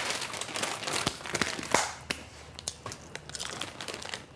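Plastic snack packet crinkling and rustling as it is handled and a hand goes into it. The crinkling is densest in the first two seconds, then thins to a few scattered crackles.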